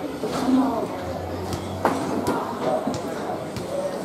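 Indistinct chatter of spectators' and players' voices around a rugby field, with a few sharp taps, the loudest a little under two seconds in.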